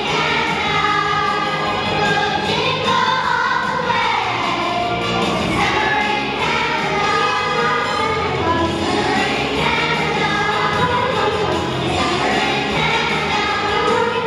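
Elementary school children's choir singing a song together.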